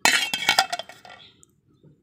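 A steel plate used as a lid is set down on a steel cooking pot: a quick run of metal clinks that dies away about a second in.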